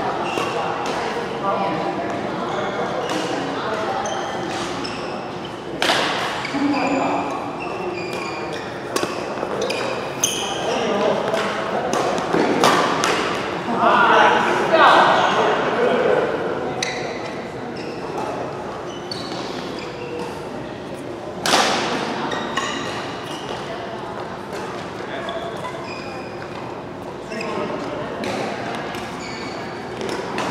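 Badminton rackets striking a shuttlecock in rally play, sharp cracks that echo in a large hall. The two loudest hits come about six seconds in and about twenty-one seconds in.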